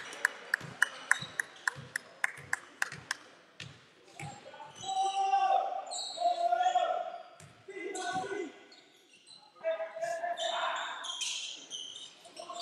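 A basketball being dribbled on a wooden sports-hall floor, about three bounces a second, for the first few seconds. Then players' voices calling out on court, echoing in the large hall.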